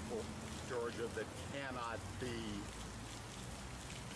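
A man speaking in short, halting phrases over a steady low background hum.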